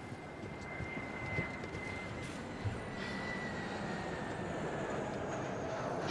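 Steady engine noise with a thin high whine that slowly sinks in pitch, getting gradually louder.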